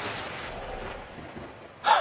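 Soundtrack sound-design boom fading away in a long rumbling wash, followed near the end by a short, sharp, louder hit that cuts off into silence.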